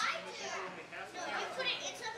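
Several children talking at once, their high voices overlapping.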